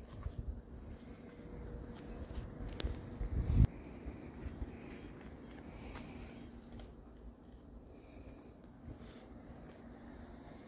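Rubbing and rustling handling noise on a hand-held camera's microphone, with a short, loud low thump about three and a half seconds in and a few faint clicks.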